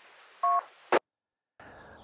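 A short beep of two tones sounded together over an amateur radio's speaker as the other station's transmission ends, followed just after by a sharp squelch click and the audio cutting out.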